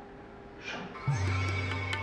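Quiet for about a second, then a brief sweeping sound effect followed by background music that comes in suddenly with a steady low drone, held tones and light percussion strikes.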